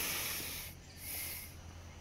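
A man's breath close to the microphone: two soft hissing breaths, each about half a second long.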